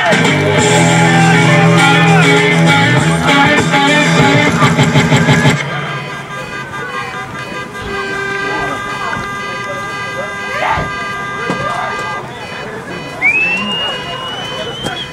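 Rock music with guitar, cut off suddenly about five and a half seconds in. After it, crowd voices over a long steady horn tone lasting several seconds, and a short rising whistle near the end.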